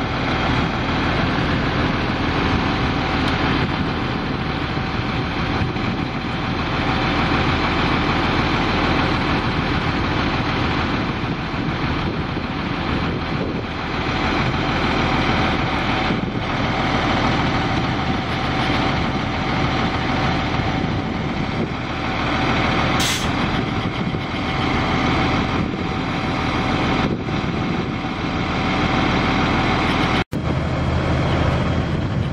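Cummins 8.3 L six-cylinder diesel of a Kenworth T300 rollback running steadily with the PTO driving the Jerr Dan bed's hydraulics while the tilted bed is lowered level and drawn forward, with a steady whine over the engine. A brief high hiss partway through.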